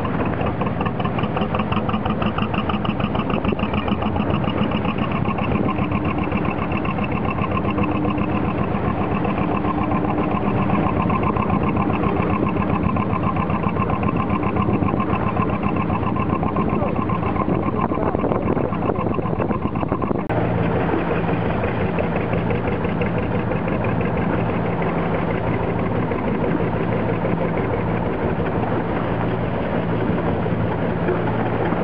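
Narrowboat engine running steadily with a fast regular beat; its tone changes abruptly about two-thirds of the way through.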